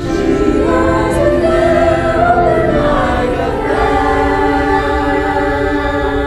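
Eighth-grade choir singing, many voices holding sustained chords that move to a new chord about halfway through.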